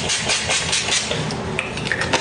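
Hand-held hair dryer blowing, a steady rushing noise with crackly buffeting against the microphone, on still-damp hair.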